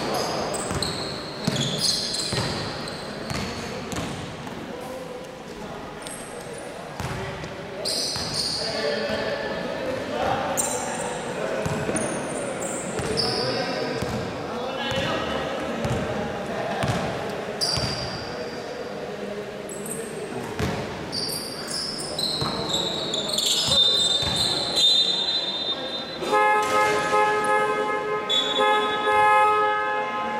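Indoor basketball game on a hardwood court: the ball bouncing, sneakers squeaking and players calling out, echoing in a large gym. About 26 seconds in, a horn-like buzzer sounds and holds for several seconds.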